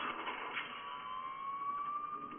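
Film soundtrack playing through a screen's speakers: a single held tone that rises slowly in pitch, with fainter overtones above it.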